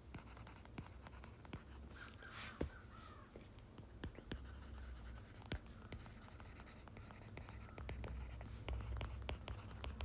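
Stylus tapping and scratching on a tablet screen during handwriting: a faint, irregular scatter of small clicks over a low hum.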